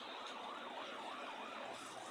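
Emergency-vehicle siren, faint, its pitch rising and falling quickly about four times a second in a yelp, over a steady background noise.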